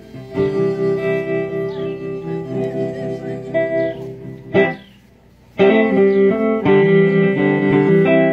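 Acoustic and electric guitars playing chords together live. A little past halfway the band stops together on a hit, leaves a pause of about a second, then comes back in.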